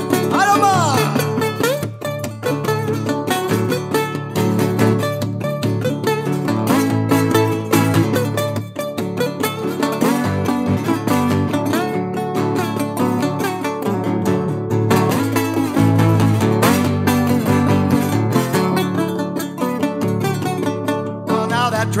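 Live blues instrumental break on guitar: plucked strings keep a steady driving rhythm between sung verses, with a few sliding notes near the start.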